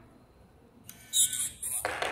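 Electronic beep tones from a smart cylinder lock's keypad, high-pitched and lasting just under a second, starting about a second in. A noisier mechanical sound begins near the end.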